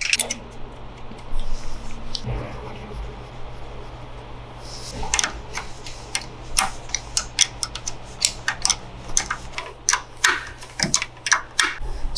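Metal clicks and clinks of a 10 mm box-end wrench working the mounting nuts as a carburetor is bolted onto a Briggs & Stratton L206 kart engine, quick and irregular from about five seconds in, over a steady low hum.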